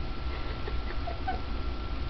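Domestic cat giving a few faint, short squeaky chirps while playing with her toy mouse, over a steady low hum.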